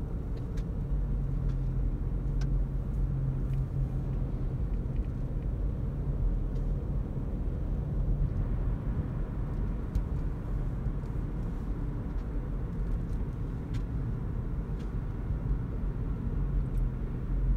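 Steady road and tyre rumble inside the cabin of a moving Toyota Auris Hybrid, with a low hum that eases off about eight seconds in.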